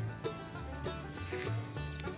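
Background music: a steady bass line with short melodic notes over it.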